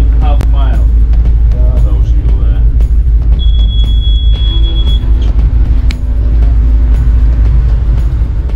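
Steady low rumble on a ship's bridge, with brief voices in the first second and music over it. A single high electronic beep sounds for about a second and a half near the middle.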